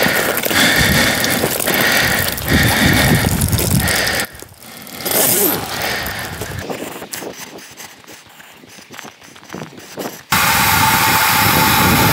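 Rustling and handling noises with scattered clicks. About ten seconds in, a steady loud hiss starts abruptly with a thin whistling tone in it: water rushing through a float valve into a stock tank that is filling up.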